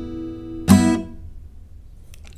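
An acoustic guitar chord, a G6 shape at the fourth fret, rings and fades. It is strummed again once about two-thirds of a second in, and the new chord dies away within about half a second.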